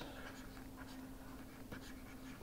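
Faint stylus scratching and tapping on a pen tablet while handwriting, over a steady low hum.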